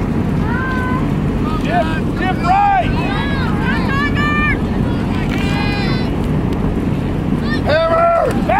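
Scattered shouts and calls from voices around a football field during a play, over a steady rumble of wind on the microphone. The shouting grows louder near the end.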